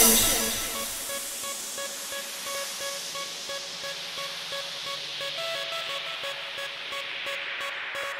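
Quiet breakdown in a makina DJ mix: a noise wash that fades out over the first second or two, a soft, short synth note repeating, and a filtered noise sweep slowly falling in pitch.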